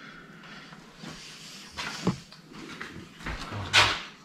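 Faint workshop handling noises over low hiss: a few soft knocks, then a sharper clack near the end.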